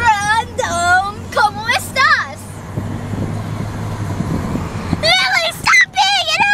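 A girl's high-pitched wordless vocalizing, in short bursts during the first two seconds and again near the end. In the pause between, the steady low hum of the car cabin's road noise.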